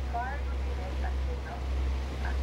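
A tour boat's engine running with a steady low rumble as it cruises along the cliffs, with people's voices talking indistinctly over it.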